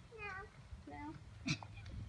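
A high-pitched voice making two short sounds that fall in pitch, the first right at the start and the second about a second in, then a single sharp click about a second and a half in.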